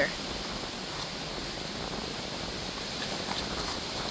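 Steady outdoor background noise, with a few faint ticks about three seconds in.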